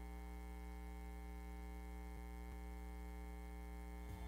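Steady electrical mains hum, with two faint ticks a little past the middle.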